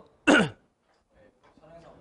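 A man clearing his throat once, a short rasp about a quarter second long with a falling pitch. A quiet pause follows.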